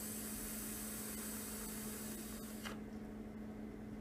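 Fogger V4 rebuildable tank atomizer fired during a long drag: a steady hiss of the coil vaporising e-liquid and air drawn through the tank, cutting off about two and a half seconds in. A steady low hum runs underneath.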